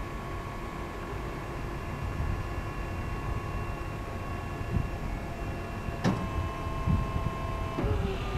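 Electric motor of an ABM Orion 1000 electric personnel lift running with a steady whine. A click comes about six seconds in, after which its tone changes, and the pitch shifts again just before the end.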